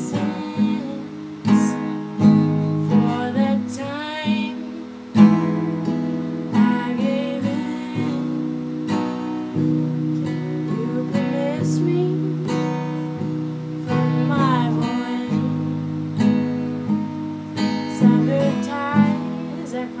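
Acoustic guitar playing chords, with the low notes and harmony changing every second or two.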